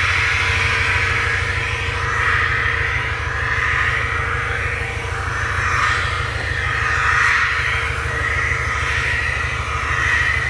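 Driving simulator in operation: a steady low rumble under a steady hum and hiss, like vehicle running noise.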